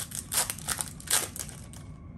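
Crinkling and rustling of a baseball card pack's foil wrapper and cards as they are handled: a quick series of short crackly rustles, loudest about a second in, dying away just before the end.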